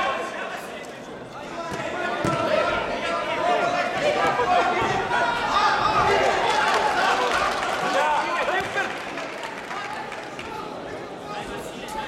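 Several voices calling out over one another in a large, echoing sports hall, from spectators and corner men during a sanshou bout. A few dull thuds of strikes land among the voices, the clearest about two seconds in.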